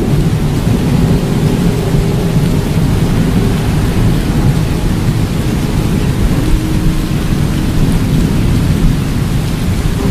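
Thunderstorm sound effect: heavy rain with a steady low rumble of thunder. A few faint held tones sit underneath it.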